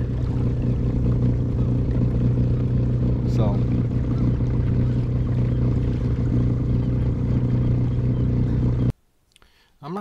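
A steady low engine drone with a constant hiss over it, cutting off abruptly about nine seconds in. A brief call breaks through about three and a half seconds in.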